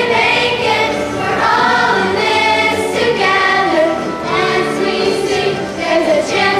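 A group of children and teenagers singing together as a choir, with music.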